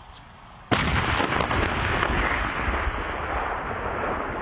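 A tank's main gun firing a single shot about a second in: a sudden blast followed by a long echoing rumble that slowly fades.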